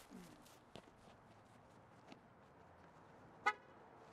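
One short car-horn chirp from a Nissan sedan about three and a half seconds in, the signal of a remote key fob locking or unlocking it as its lights flash. A few faint clicks are heard earlier.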